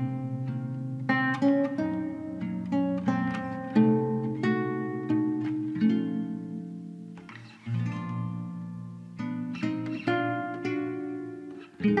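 Background music on a plucked string instrument, picking single notes and chords that each ring out and fade.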